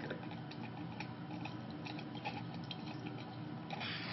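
Squeeze wash bottle of deionized water squirting onto a copper wire and into a glass beaker: faint scattered drips and ticks, with a louder rush of spray near the end.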